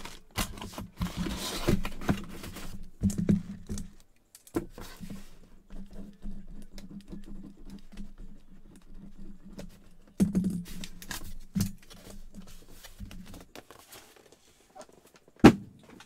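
Plastic packaging crinkling as a bagged jersey is handled in the first few seconds, then scattered light clicks and taps from handling things on a table, with a sharp click near the end. A low steady hum runs underneath.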